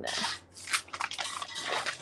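Paper being handled and pressed down on the desk by hand, giving a run of short, irregular rustles and scrapes.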